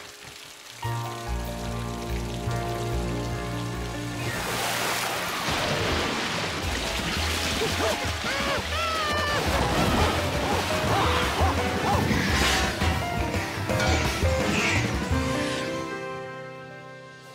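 Background music on sustained held chords. From about four seconds in, a loud rush of flooding water and rain joins it as a cartoon sound effect, then fades out near the end.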